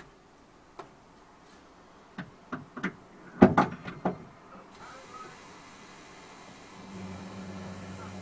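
A series of sharp clicks and knocks inside a parked car's cabin, the loudest about three and a half seconds in. Near the end a steady low hum starts up and keeps going.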